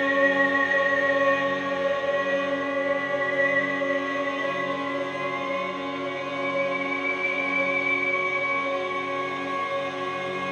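Drone hurdy-gurdy (vielle à bourdons) sustaining a dense chord of steady drones, its lowest notes pulsing roughly once a second. Above it an ondes Martenot holds a high, singing note that slides up about halfway through.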